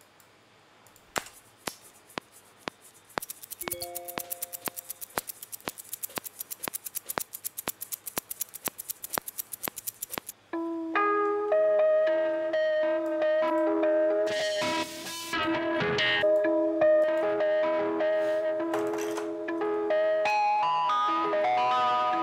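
A fast, even ticking loop plays for several seconds, then stops abruptly and a mellow house loop starts: held synth notes with a plucked-sounding melody over them.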